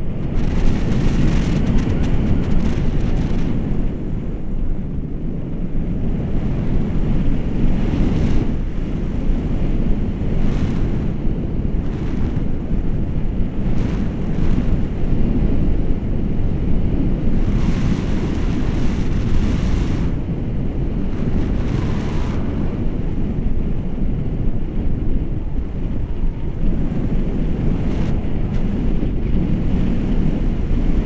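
Wind rushing over the action camera's microphone in paragliding flight: a steady loud rumble, with gusts of brighter hiss swelling now and then.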